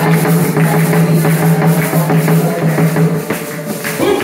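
Live worship music: tall hand drums beaten in a fast, steady rhythm, with hand-clapping and a high rattle on top, over a steady held note.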